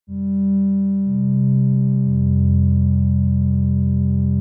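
Electronic synthesizer drone, steady sustained low tones that build into a chord: a new lower note joins about a second in and another about two seconds in.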